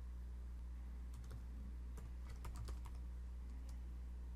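Computer keyboard being typed on: a quick run of key clicks from about one second in to near the end, as a terminal command is entered. A steady low electrical hum runs underneath.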